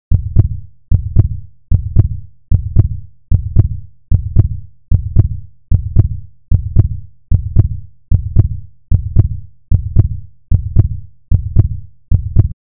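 Heartbeat sound effect: deep double thumps, lub-dub, repeating evenly at about 75 beats a minute.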